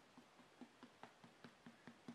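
Faint, rapid taps of a paint sponge dabbing on a vinyl doll limb, about five taps a second.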